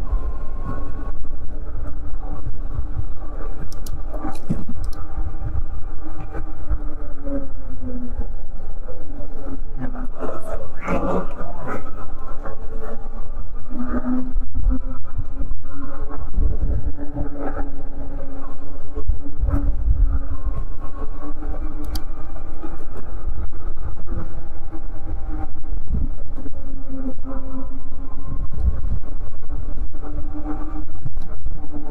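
Eahora Juliet e-bike's electric motor whining under way, its pitch gliding up and down several times as the speed changes, over a heavy rumble of wind on the microphone.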